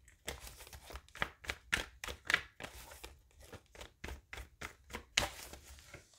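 A tarot deck being shuffled by hand: a run of soft, irregular card clicks and rustles, with a louder flurry about five seconds in.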